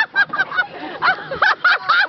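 High-pitched laughter, a rapid run of short cackling bursts, several a second.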